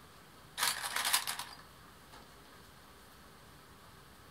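Hands folding a woven cotton towel's hem and handling plastic sewing clips: a brief burst of rustling and small clicks starting about half a second in and lasting under a second.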